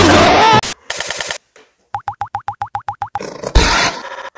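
A cartoon boing sound effect: a fast run of about ten short springy chirps, each rising in pitch, lasting about a second. Just before it the preceding sound cuts off with a click and a brief buzz, and a burst of noise follows near the end.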